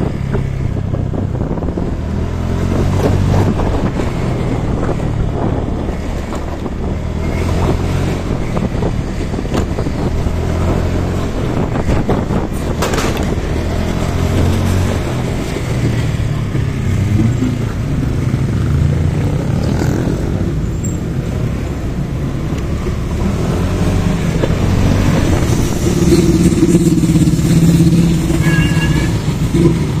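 Motorcycle engine running while riding, its pitch drifting up and down with the throttle, under steady wind and road noise. Near the end the surrounding traffic gets louder, with a few brief high beeps.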